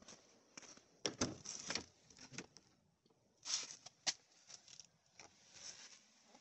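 A car door opening and a person climbing into the seat: a few clicks and knocks, the loudest about a second in, short rustles, and a sharp click about four seconds in.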